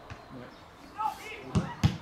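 Two sharp thuds of a football being struck, a quarter of a second apart near the end, the second the louder.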